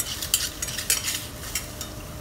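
Mushrooms frying in a pan over a gas burner, crackling with irregular sharp pops several times a second over a steady sizzle.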